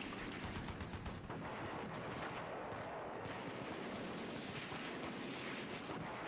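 Dense, rapid gunfire: a quick rattle of shots, thickest in the first second or so, over a steady noisy din of firing.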